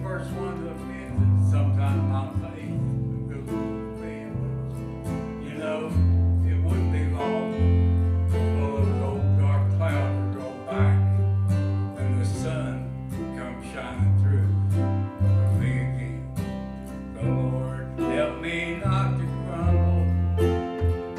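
Southern gospel accompaniment: an acoustic guitar strummed and picked over a steady bass line, with the bass note changing every second or two.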